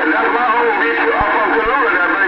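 Distant voices coming in over a Cobra 2000 CB base station's speaker on skip, garbled and unintelligible, with steady tones running under them.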